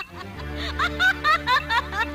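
A woman's theatrical stage laugh, a run of short 'ha' pulses about three a second, over steady low backing music.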